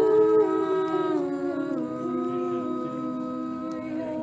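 Small choir singing an Orthodox communion hymn a cappella, slow held chords in harmony that step down in pitch.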